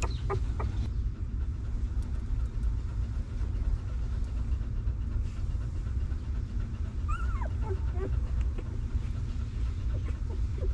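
Newborn puppies squeaking and whimpering: a few short squeaks right at the start, then a run of falling whines about seven to eight seconds in, over a steady low rumble.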